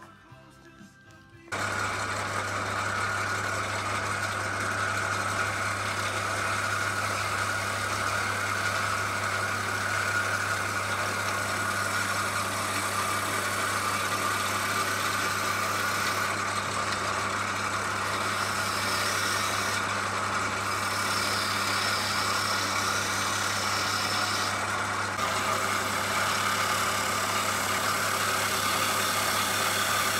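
Jet JWL-1442 wood lathe running, a steady motor hum under the hiss of a turning tool cutting a spinning yew blank. It starts abruptly about a second and a half in.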